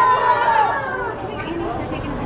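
Voices: a high voice holds a long drawn-out exclamation that trails off less than a second in, followed by a general murmur of people chatting.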